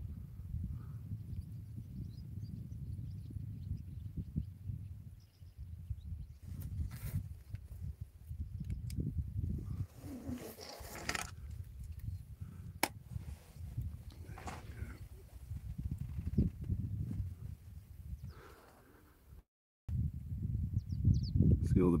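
Outdoor ambience: a low, uneven rumble with a few faint scattered sounds, cutting out completely for a moment near the end.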